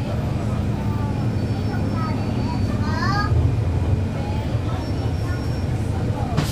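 Cummins ISL9 diesel engine of a 2011 NABI 416.15 (40-SFW) transit bus running steadily, heard from inside the bus as a low rumble with a constant hum.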